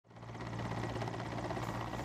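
Mil Mi-17 transport helicopter hovering low, its main rotor and turbine engines making a steady drone that fades in quickly at the start.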